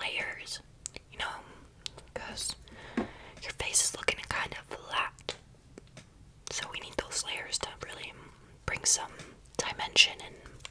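A young woman whispering close to the microphone, in breathy phrases with pauses between them and a few short sharp clicks.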